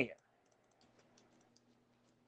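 A man's word cuts off at the very start. Then come faint, scattered light clicks over a faint, steady low hum.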